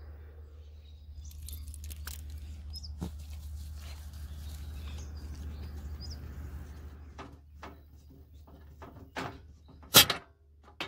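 Faint ambience with a steady low hum and a couple of short, high bird chirps, then a few short knocks in the last three seconds, the last a sharp, loud clack.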